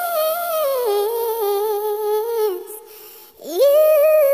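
A solo voice from a song, humming or singing long sustained notes: a high note stepping down to a lower held note, a brief break, then a new note swooping up into a high hold near the end.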